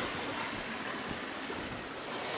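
Small brook running: a steady, even rush of water.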